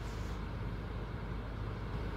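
Quiet room background: a faint, steady low hum with no distinct sounds.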